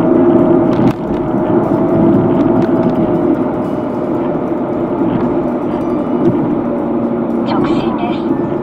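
Car engine and road noise inside the cabin while driving: a steady drone with a held tone that drops slightly in pitch partway through, and a click about a second in.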